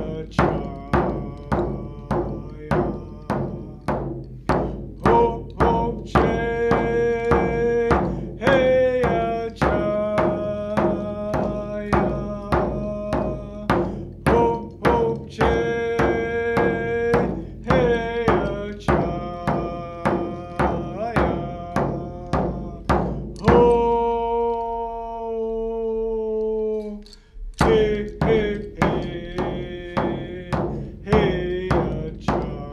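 A man sings a Squamish welcome song over a steady hand-drum beat, about two strikes a second, on a hide frame drum struck with a padded beater. About three-quarters through, the drumming stops while he holds one long note for about four seconds, then the beat resumes.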